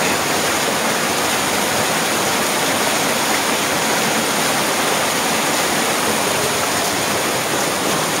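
Waterfall pouring over rocks, heard at close range as a steady, unbroken rush of falling water.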